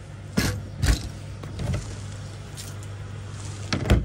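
Wooden slatted shoe rack knocking as it is handled, with two sharp knocks early and a few softer ones after, over a steady low hum. Just before the end comes a louder knock as a plastic wheelie-bin lid is lifted.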